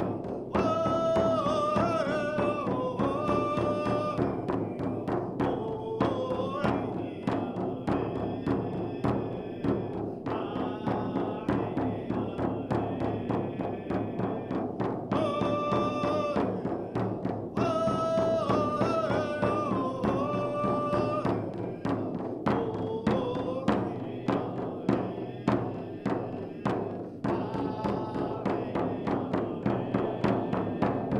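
A large First Nations hand drum, a painted hide frame drum, beaten in a steady, even rhythm while a man sings a chant over it in long, held phrases.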